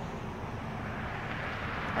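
Steady low background rumble of distant engine noise outdoors, even throughout, with no distinct events.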